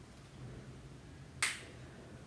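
A single short, sharp click about one and a half seconds in, over a faint steady low hum.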